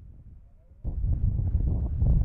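Wind buffeting the microphone: a low, gusting rumble that starts suddenly a little under a second in.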